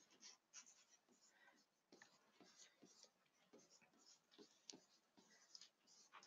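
Faint, quick scratching and tapping of a pen writing numbers by hand, in short irregular strokes.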